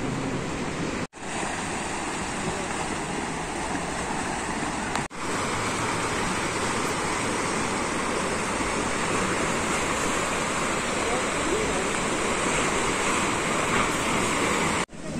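Steady rushing of sea surf washing over shoreline rocks, mixed with wind. The sound cuts out briefly about a second in and again about five seconds in.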